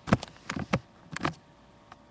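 Handling noise from a hand moving against or right by the webcam microphone: a quick, irregular run of short knocks and rubs, with one more near the end.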